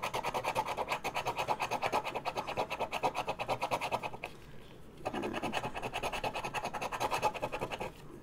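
Scratch-off lottery ticket being scratched with the edge of a round disc-shaped tool, scraping off the coating in rapid back-and-forth strokes, several a second. The scraping pauses briefly about four seconds in, then resumes.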